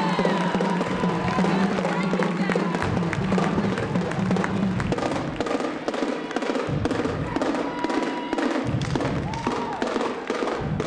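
High school marching drumline playing a fast cadence, a rapid run of sharp drum strokes on carried snare and tenor drums.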